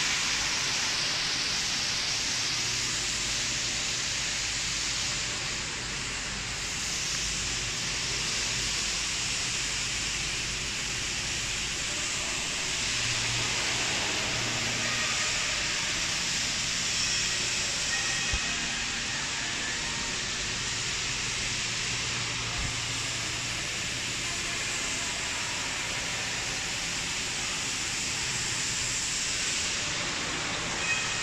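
Steady hiss of factory-hall background noise with a faint low hum, and a couple of small clicks about midway.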